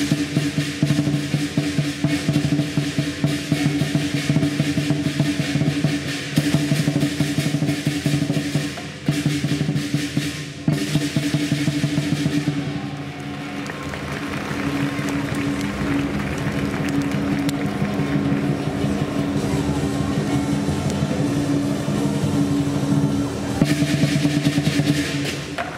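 Lion dance percussion: a large lion drum beaten together with crashing cymbals and gong, in fast, dense strikes. About halfway through it drops into a quieter drum roll that slowly builds, and the sharp full-ensemble strikes return near the end.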